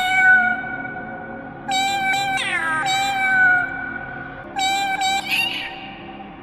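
A cat meowing in three long, drawn-out calls, each held on a steady note and then sliding down in pitch, with a sung, musical quality.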